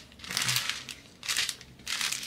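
Plastic bags of diamond-painting drills crinkling as they are handled and sorted, in two bursts about a second apart.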